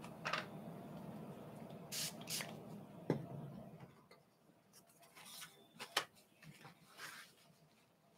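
Several short brushing or hissing handling noises and a sharp click, over a low steady hum that stops about four seconds in.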